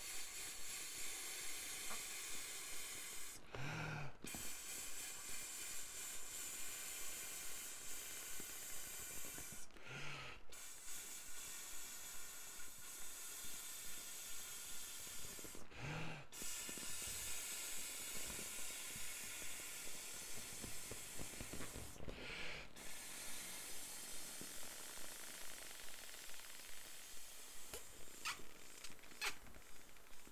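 Air blown by mouth through the valve of a plastic inflatable: long, steady breaths of about six seconds each, broken by a short intake of breath four times. A few light clicks near the end.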